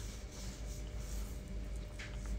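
Faint rustling and rubbing of handling noise as a long spirit level is picked up off the floor and laid against a radiator wall bracket.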